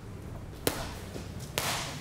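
Two punches smacking into focus mitts about a second apart, the second louder, over a low steady hum.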